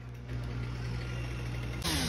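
Heavy equipment engine idling steadily, a low hum. Just before the end a new, louder engine sound starts, that of a chainsaw.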